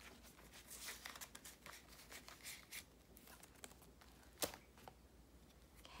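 Faint rustling and crinkling of paper money and a plastic binder pouch being handled, with one sharp click about four and a half seconds in.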